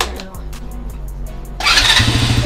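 Small Taotao youth ATV engine starting: a sudden loud catch about one and a half seconds in, settling into a rapid, even firing beat. Background music runs underneath.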